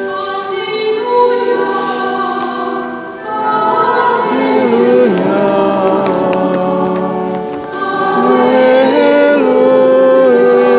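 Church congregation singing a hymn together in long held notes that move up and down in steps, with short breaks between phrases about three seconds in and again near eight seconds.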